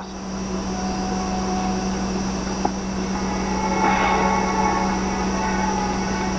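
Steady low hum and hiss of a television's sound recorded off the set, with no dialogue; a faint, brief rise in sound about four seconds in.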